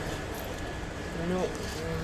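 A few quiet spoken words in the second half over the steady background noise and faint hum of a large shop floor.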